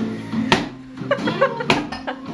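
A wine bottle held in a shoe is struck heel-first against a wall, giving two sharp knocks a little over a second apart. It is the shoe method of opening wine, where each blow pushes the cork out a little.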